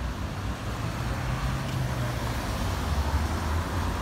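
Road traffic at a city intersection: car engines running as cars wait and pull through, a steady low hum with no sudden events.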